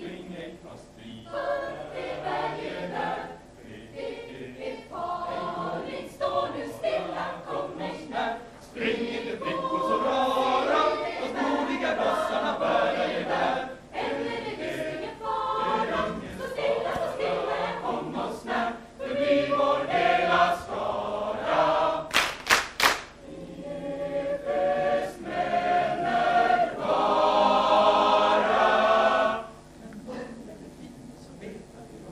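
Mixed student choir singing a cappella in several parts, with a quick run of four sharp hits about two thirds of the way through. The song ends on a loud held chord that cuts off just before the end.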